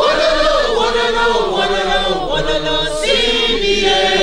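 A large crowd of workers singing a protest song together, many voices at once in a sustained, sung chant.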